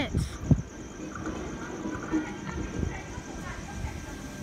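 Steady low rumble of an approaching V-set electric intercity train, with a sharp knock about half a second in.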